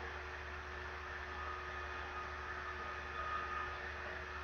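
Steady low electrical hum with an even hiss and a few faint steady tones: the background noise of the recording, with no other event standing out.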